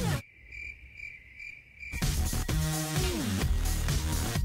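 The music breaks off and a cricket chirps alone, about two or three chirps a second, for nearly two seconds; then electronic music comes back in for the rest.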